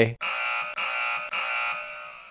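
Electronic alarm buzzer sound effect: three steady buzzing pulses in quick succession, then a short fading tail, the kind of buzz that marks an error or wrong answer.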